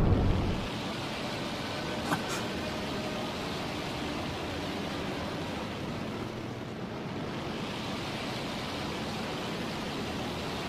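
Steady heavy rain, an even hiss with no rhythm. It opens as a loud low rumble dies away in the first half second, and there is a faint brief click about two seconds in.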